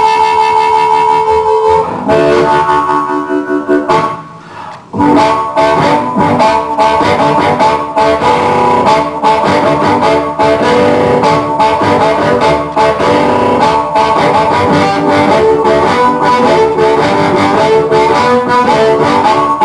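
Amplified blues harmonica played through a microphone cupped in the hands, a train-style boogie over a steady rhythmic pulse. The playing drops out briefly about four seconds in, then comes back at full level.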